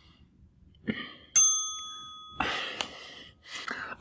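A single bright bell-like ding about a second and a half in, ringing for about a second as it fades, followed by a breathy sigh.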